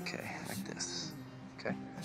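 Soundtrack pop song with held instrumental notes and a soft, breathy vocal.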